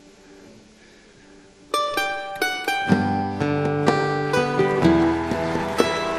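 Live acoustic country band starting a slow song: a second or so of near hush, then picked string notes begin about 1.7 seconds in, and bass and the rest of the band join about a second later.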